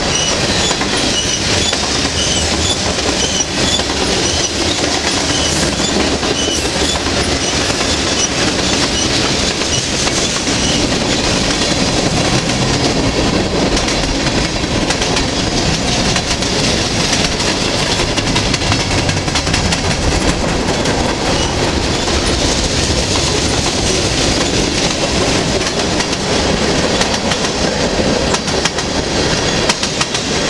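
Freight train cars, covered hoppers and then tank cars, rolling steadily past close by, with wheels clattering over the rail joints.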